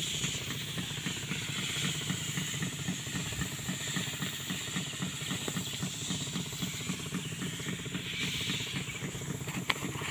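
A small engine running steadily, an even low throb of about four or five pulses a second under a constant hiss.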